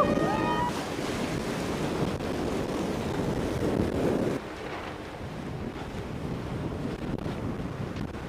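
Wind buffeting the microphone over the wash of waves around a small racing sailboat at sea. The sound drops in level about four seconds in.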